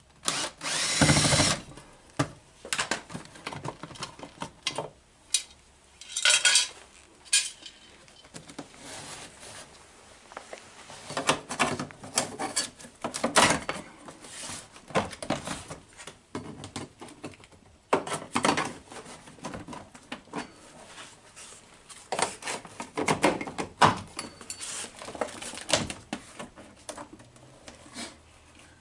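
Cordless drill spinning out the two hidden screws of a Mercedes W116 door panel in short whirring runs, about a second in and again around six seconds. After that comes a string of clicks, knocks and scraping as the vinyl-covered door panel is worked loose from its clips and lifted off the door.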